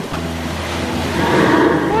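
Paddle wheel of a steam riverboat churning the water, a steady rushing splash, with a low steady hum underneath.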